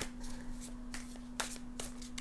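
A tarot deck being shuffled overhand: cards slipping and tapping against each other in a run of irregular soft clicks.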